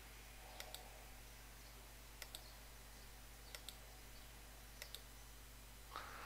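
Computer mouse button clicking four times, each a quick press-and-release double tick, faint over a low steady hum.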